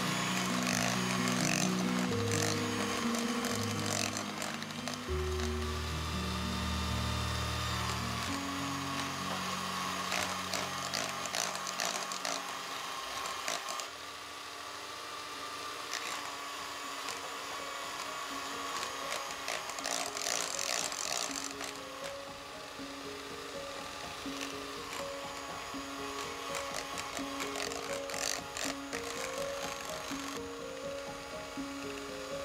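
A Kenwood electric hand mixer runs steadily as its beaters cream softened butter while beaten egg is worked in, over background music.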